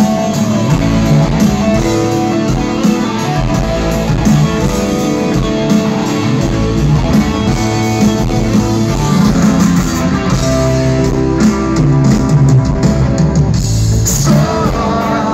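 Live rock band playing at a loud concert, recorded from within the crowd.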